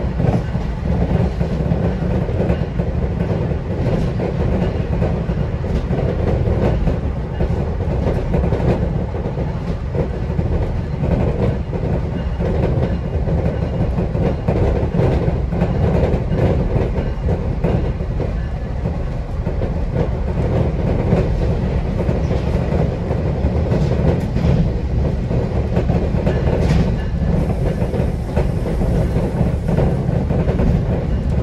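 Steady rumble of a GO Transit bi-level passenger coach rolling along the track, heard from inside the coach, with a few faint clicks of the wheels over the rails.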